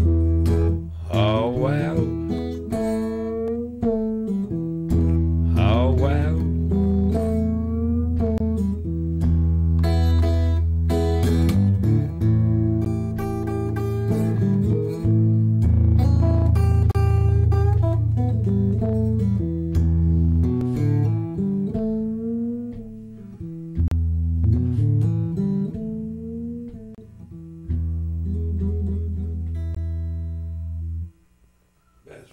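Blues guitar played solo, picked single-string lines with bent notes over deep, sustained bass notes.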